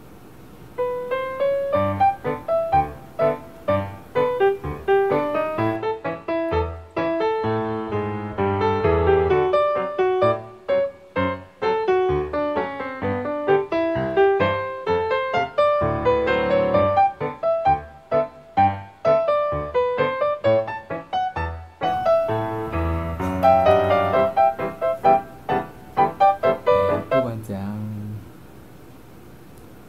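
Background piano music, a quick run of struck notes with a light melody, starting about a second in.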